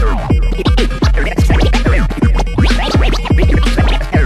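Vinyl record scratching on a turntable, read by a JICO J44A 7 DJ IMP Nude stylus and chopped with the mixer's crossfader, over a steady electro beat with deep bass. The scratches are quick pitch sweeps that rise and fall many times a second.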